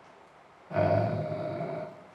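A man's long hesitation sound, a drawn-out 'euh' held at one pitch for about a second, starting partway through.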